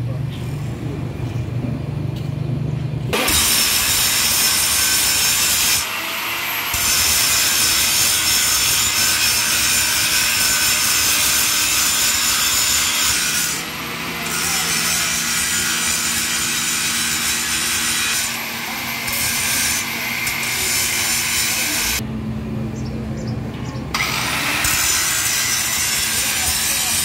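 Electric arc (stick) welding on a steel truck leaf spring: a loud, steady crackling hiss that starts about three seconds in and runs with several short breaks.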